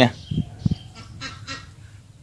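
A few short, quiet bird calls, with two short low thumps about half a second in.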